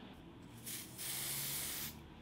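Aerosol can of Sephora spray foundation spraying onto bare skin: one hiss lasting a little over a second, starting about halfway in, strengthening, then cutting off sharply.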